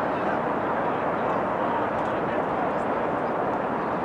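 Steady outdoor background roar with faint, distant shouts and calls from rugby players and sideline spectators.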